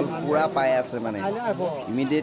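Speech only: spectators talking close by, one voice after another with no break.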